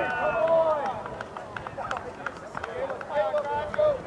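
Soccer players shouting and calling to each other across the pitch, several voices overlapping, loudest in the first second and again near the end. Scattered short knocks run underneath.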